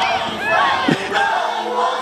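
Many children shouting and screaming at once, high excited yells overlapping.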